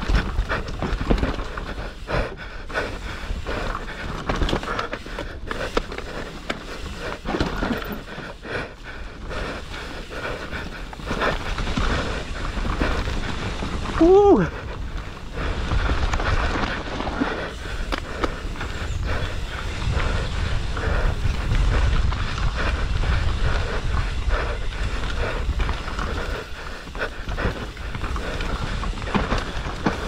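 Mountain bike descending rough dirt singletrack: tyres on loose soil, the bike rattling over bumps and wind on the microphone, with the rider breathing hard. About fourteen seconds in, a brief pitched sound rises and falls, the loudest moment.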